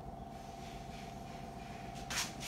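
Arno Ultra Silence Force electric fan running: a faint, steady hum with a thin, even tone above it.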